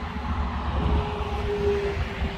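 Highway traffic passing close by, a heavy articulated truck among it, with a steady hum that comes in about a second in over a continuous rumble of tyres and engines.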